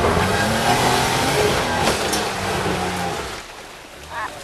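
Jeep Wrangler JK's V6 engine revving under load as it climbs a steep dirt hill, with small rises and falls in pitch. It fades out near the end as the Jeep goes over the crest.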